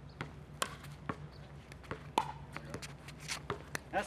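A pickleball rally: sharp pops of paddles striking the plastic ball, with the ball bouncing on the hard court between hits, at irregular intervals. The loudest hit comes a little past halfway.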